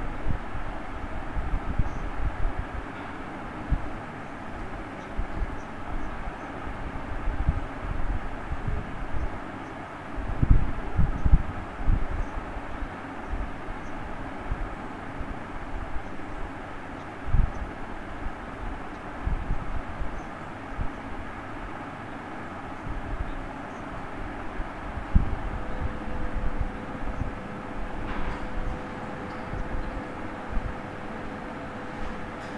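Steady rumbling background noise with irregular low thumps, heaviest about ten seconds in; a steady hum joins about four seconds before the end.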